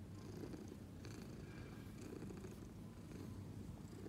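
Domestic cat purring steadily, the purr swelling and easing about once a second with its breathing.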